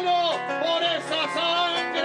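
Folk music with a singing voice wavering on long held notes over plucked guitar accompaniment.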